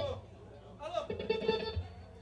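A man calling "Alô!" into a microphone through the bar's PA, followed by more voice sound from the room about a second in.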